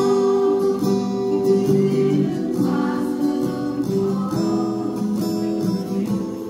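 Ukulele ensemble with an acoustic guitar strumming a tune together.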